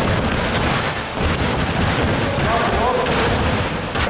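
Several basketballs bouncing over and over on a wooden gym floor, the thumps overlapping into a constant clatter that echoes around a large hall. Students' voices call out briefly in the middle.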